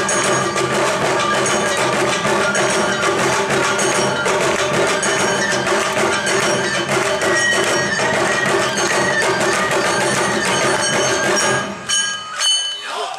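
Awa odori festival band playing a brisk, steady dance rhythm on taiko drums, with a small hand gong (kane) clanging on the beat and a melody line over it. The music stops abruptly just before the end.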